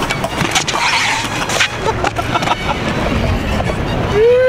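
BMX bike rolling over a concrete skatepark, heard as a loud rumbling road-and-wind noise on the camera's microphone, with several sharp knocks from the bike and tyres against the concrete.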